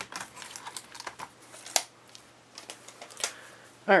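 Paper pieces being handled and laid out on a work surface: a run of light rustles and small irregular clicks, with a couple of sharper taps about two and three seconds in.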